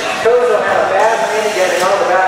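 People talking, with no clear words.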